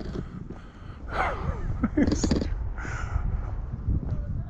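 Crow cawing, about three harsh calls spaced roughly a second apart.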